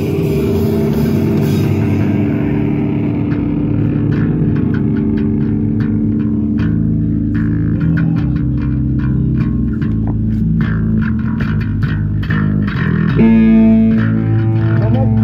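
Live rock band playing electric bass and electric guitar through amplifiers, with sparse sharp hits on top. A louder, fuller guitar chord comes in about a second before the end.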